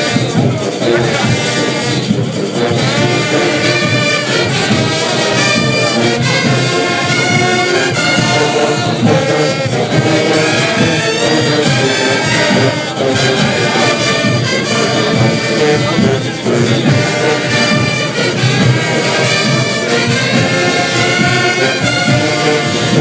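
Loud, continuous band music led by brass horns, trumpets and trombones, with crowd voices underneath.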